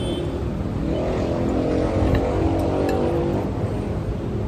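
A steady low rumble, like a vehicle engine in the background, with a droning pitched hum that swells between about one and three and a half seconds in. A few faint clinks of cutlery on a plate come around the middle.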